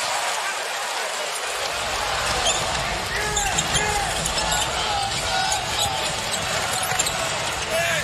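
Arena crowd noise during a basketball game, with a basketball bouncing on the hardwood court; the low rumble of the crowd fills in about a second and a half in.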